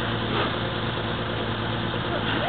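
Off-road 4x4's engine running at a steady low speed, an even hum with no revving.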